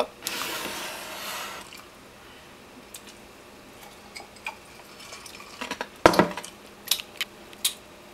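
A glass of iced tea over ice being handled: a rustling scrape as it is lifted off the counter, then a loud knock about six seconds in as it is set back down, with ice clinking in the glass.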